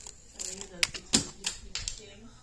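A quick series of four or five sharp knocks and clicks about a third of a second apart, the loudest a little past a second in, heard as the hand-held phone swings quickly.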